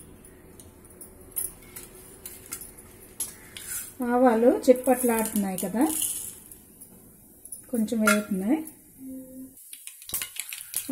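Mustard seeds crackling and popping in hot oil in a nonstick frying pan: a scatter of sharp clicks. A person's voice comes in about four seconds in and again near the end, louder than the popping.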